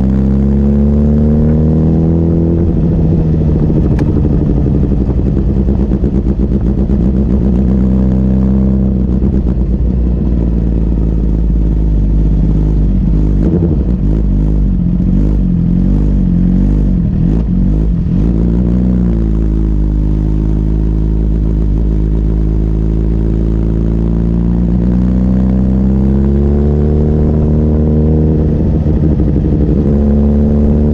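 Sport motorcycle engine, heard on board. It winds down over the first few seconds, runs at low revs with an uneven, wavering pitch through the middle, then revs rise steadily over the last several seconds as the bike pulls away.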